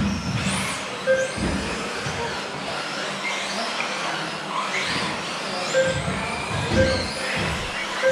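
1/10-scale electric off-road RC buggies racing, their motors whining up and down in pitch as they accelerate and slow, with several thumps among them. A few short beeps sound along the way.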